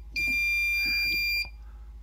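Digital Circuit Detective breaker-finder receiver sounding one steady, high-pitched beep, about a second long. It is beeping on the breaker that carries the transmitter's signal, having tuned itself to the strongest signal.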